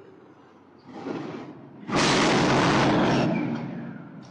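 A sudden, very loud boom about two seconds in that holds for over a second before dying away.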